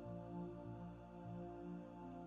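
Quiet ambient music of held, low notes that shift slowly.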